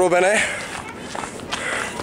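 A man's voice trailing off at the start, then footsteps of a person walking along a path.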